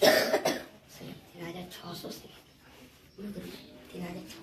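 A man coughing: two quick coughs right at the start, then fainter voices in the room.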